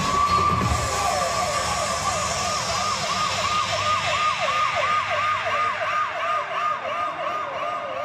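Electronic emergency-siren sound: a wail that rises and holds high for about two seconds, then switches to a fast up-and-down yelp of about three cycles a second.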